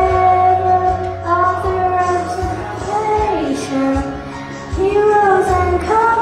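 A young girl singing a song into a handheld microphone over instrumental accompaniment, holding long notes that glide between pitches. A drum kit is beaten unevenly behind her, giving a few low thumps in the middle.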